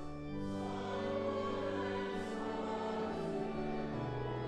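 A congregation singing a hymn to organ accompaniment, the held chords changing every second or so.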